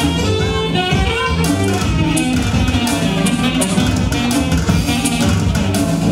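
Live band playing dance music, with saxophone over a steady bass line; a percussion beat comes in about a second and a half in.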